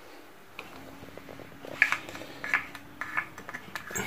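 Light, irregular clicks and scrapes of a wooden craft stick against a small plastic cup and bowl as slime mixture is scraped out.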